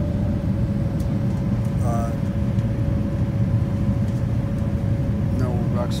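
Jet airliner cabin noise on descent: a steady low rumble from the turbofan engines and airflow, with a faint steady tone running through it.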